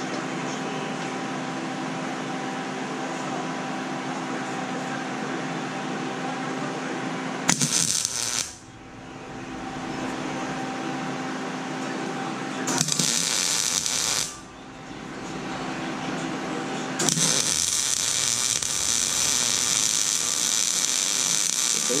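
Lincoln 175 MIG welder striking arcs on a steel cart frame: two short bursts of arc crackle, about 7 and 13 seconds in, then a long steady bead from about 17 seconds on. A steady hum runs underneath.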